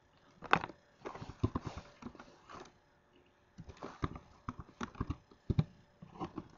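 Irregular clicks and knocks of a computer mouse being worked at a desk, with a noisy rustle lasting over a second starting about a second in.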